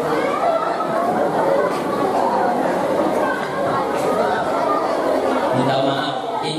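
Chatter of many people talking at once in a large hall, voices overlapping with no single clear speaker.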